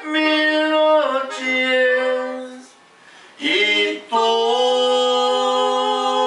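Live norteño music: a man singing long held notes over a Gabbanelli button accordion sounding sustained chords. The music breaks off briefly a little before the middle, then comes back in.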